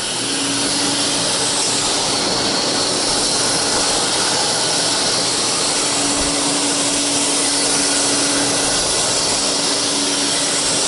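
Vintage Hoover Constellation 444 floating canister vacuum switched on. The motor comes up to speed within the first second and then runs steadily: a rush of air with a steady hum under it.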